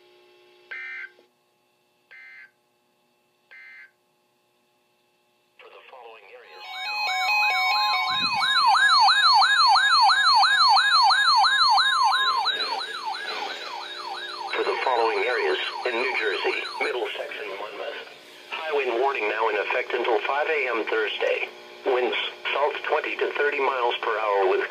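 Three short digital data bursts of a NOAA Weather Radio SAME end-of-message code. Then several weather alert radios sound rapidly warbling alarm sirens over the steady NOAA warning alarm tone, which stops about 12 seconds in. A broadcast voice then starts reading a high wind warning while the sirens go on a few seconds more.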